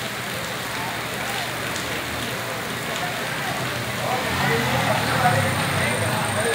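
Steady hiss of rain with indistinct voices, which get louder about four seconds in.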